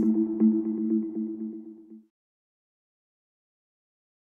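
News station logo sting ending: a held low two-note chord with faint ticks over it, fading out and stopping about two seconds in.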